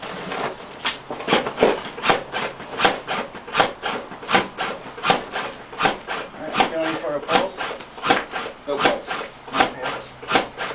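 ZOLL AutoPulse automated CPR device running on a manikin, its load-distributing band cinching and releasing around the chest. The result is a steady mechanical rhythm of sharp rasping clacks, about eight every three seconds, starting right at the outset.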